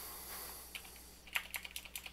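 Computer keyboard being typed on: a quick run of quiet key clicks that begins under a second in, as a math expression is entered letter by letter.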